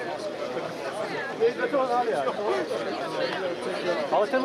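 Indistinct chatter of several people talking at once, a crowd murmur with no single clear voice.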